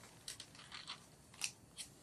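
Sheets of paper being handled and shuffled: four or five short, dry rustles.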